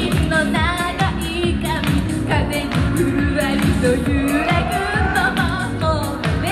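Japanese idol pop song performed live: female voices singing into microphones over an amplified backing track with a steady dance beat.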